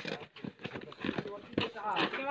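A cardboard shipping box being handled and turned over by hand: a string of knocks and taps, the loudest right at the start.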